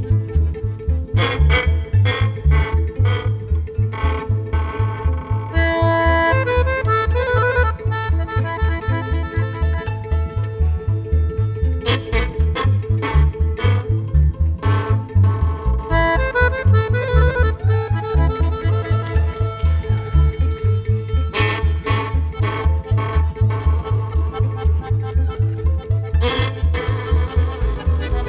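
Romanian lăutar fiddle music: a violin sounded by pulling a horsehair thread tied to a string rather than bowing, giving its runs of high notes. A band accompanies it with a steady low pulsing beat.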